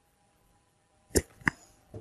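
Two short, sharp clicks about a third of a second apart, starting about a second in, then a fainter click near the end.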